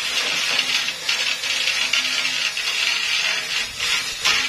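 Sawmill saw cutting through a large trembesi (rain tree) log: a loud, steady cutting noise with a faint low machine hum underneath.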